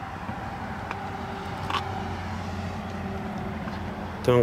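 A steady low hum of a car engine running, with a couple of faint ticks.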